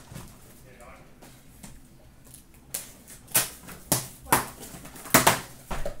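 Cardboard hobby boxes of trading cards being taken out of a cardboard master case and set down on a stack: a run of six or seven sharp knocks, starting about three seconds in.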